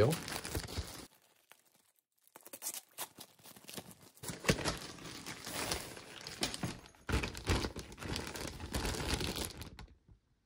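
Clear plastic poly bag crinkling as hands work a nylon packing bag out of it. A short crinkle at the start, a pause of about a second, then several seconds of irregular crinkling with brief breaks.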